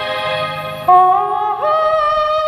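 Amplified wedding-band music: a held, bright melody line with a steady accompaniment, jumping up to a louder note about a second in and sliding up again near the end.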